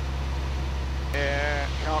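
Jodel DR1050 light aircraft's piston engine droning steadily in the cockpit during cruise. A man's voice comes in briefly just after the midpoint and again at the very end.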